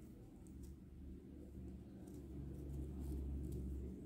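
Faint steady low hum with soft scattered ticks and rustles from a crochet hook working cotton thread.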